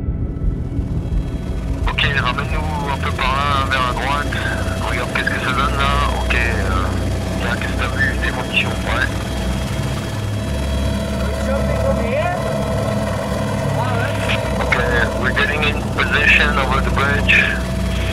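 Steady helicopter engine and rotor noise, with people talking over it from about two seconds in.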